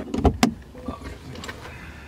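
Inside a car: a few sharp clicks and knocks in the first half second, then a low steady hum of the cabin.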